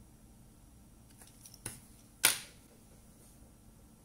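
Quiet handling of small tools and electronic parts on a wooden table: a faint tick, then a single sharp click a little past halfway through.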